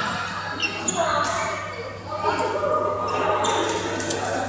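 People talking in an echoing badminton hall, with a few sharp knocks of rackets hitting shuttlecocks scattered through it.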